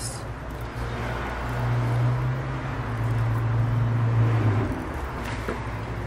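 Cotton thread rasping as it is twisted across the eyebrow, plucking out hairs during eyebrow threading. Over it, a low droning hum swells from about a second and a half in and fades out near five seconds.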